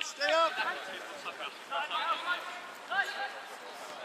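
Several people's voices calling and shouting in short bursts across an open football pitch, some distant.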